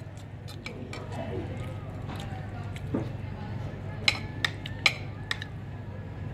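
Metal spoon and fork clinking against a plate while eating: several sharp clinks, most of them bunched in the last two seconds.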